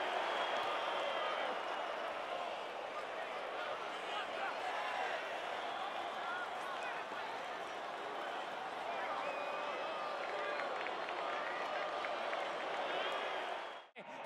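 Indoor arena crowd noise during a football match: a steady murmur of spectators with scattered faint shouts and calls.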